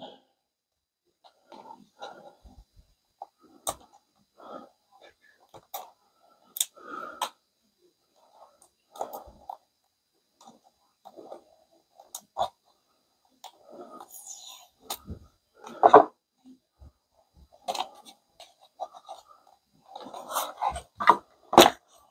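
Hands unpacking a label printer's accessories: irregular clicks, taps and rustles of cardboard and plastic packaging, with a cluster of sharper clicks near the end as a ribbon cartridge comes out of its plastic tray.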